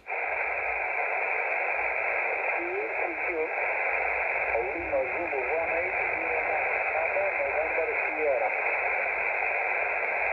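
Xiegu X5105 shortwave transceiver's speaker in receive on the 17-metre band in USB mode, giving steady hiss through its narrow sideband filter. Faint voices of a weak station rise and fall under the noise around three seconds in and again from about five seconds.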